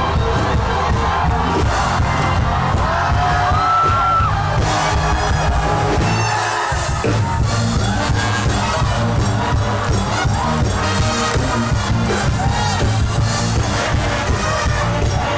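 Youth brass band playing an upbeat number, trombones and trumpets to the fore over a steady beat, with crowd noise behind. The bass drops out for a moment about six and a half seconds in, then the full band returns.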